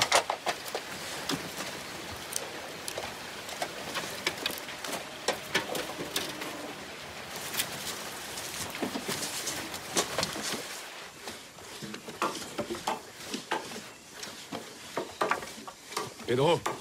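Birds calling, with a few short low calls, amid scattered clicks, knocks and rustling.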